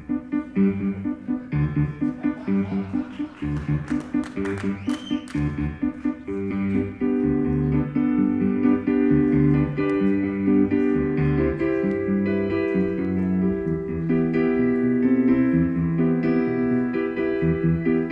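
Solo piano-sound keyboard played live: punchy, rhythmic repeated bass notes and chords, which give way about seven seconds in to fuller, held chords.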